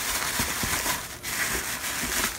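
Brown paper meal-kit bags rustling and crinkling as a hand moves them about inside the box, with a brief lull a little past the middle.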